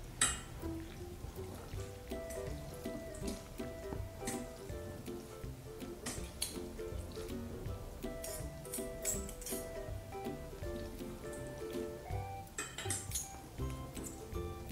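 Metal forks clinking and scraping against a stainless-steel colander as boiled noodles are tossed to coat them with oil, in scattered strikes that bunch up a few times. A soft melody plays throughout.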